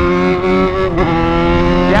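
Yamaha XJ6 motorcycle's 600 cc inline-four engine running under way at steady revs, its pitch wavering briefly about a second in and then rising slightly as it pulls.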